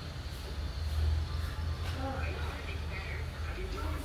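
Faint voices over a steady low rumble.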